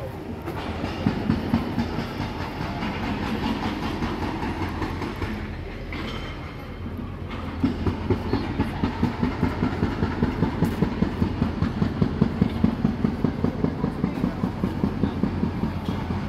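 Footsteps and handling thumps from someone walking with a handheld camera on a paved street, over a low rumble. From about halfway through, the steps are even, at about two and a half a second.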